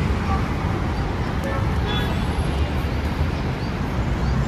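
Steady road traffic noise, a continuous low rumble with no distinct events.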